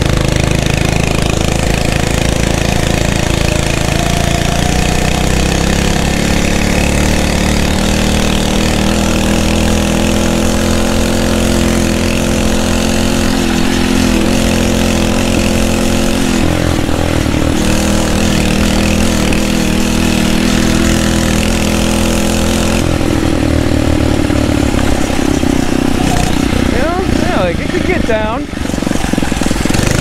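The 79cc four-stroke engine of a Phatmoto Rover motorized bicycle, its governor removed, running steadily under load while being ridden. Its note rises a little a few seconds in and shifts pitch twice later on, over a constant rush of noise.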